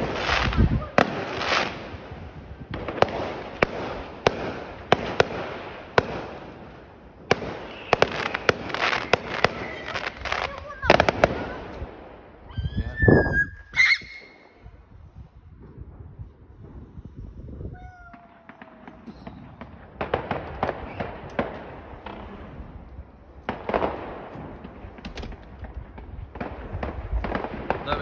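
Distant fireworks going off: a rapid run of bangs and crackles for the first dozen seconds, a quieter spell, then more scattered bangs in the last third.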